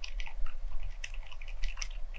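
Typing on an FL ESPORTS CMK75 mechanical keyboard fitted with silent lime switches and fully lubricated: a quick, irregular run of soft, damped keystrokes without sharp clicks, as these extremely low-noise silent switches give.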